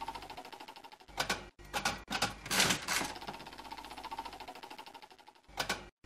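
Slot-machine reel sound effect: rapid mechanical ticking of spinning reels that fades over about five seconds, with several louder brief bursts about one to three seconds in and again near the end.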